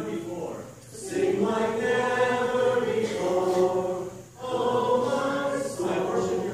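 Slow sung music with long held vocal notes in phrases, sounding like a choir. It pauses briefly about a second in and again just past four seconds.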